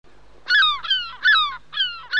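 A gull calling over and over, short squawks about two a second, each falling in pitch, over a faint steady hiss.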